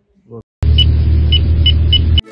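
A loud edited-in transition sound effect: a heavy deep rumble with hiss above it and several short high beeps, starting abruptly about half a second in.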